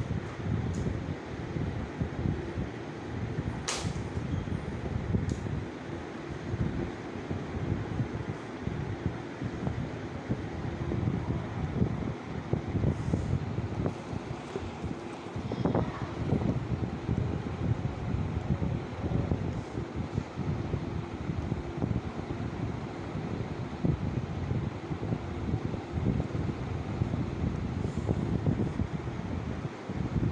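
Steady, fluctuating low rumble of moving air on the microphone, with a few faint clicks.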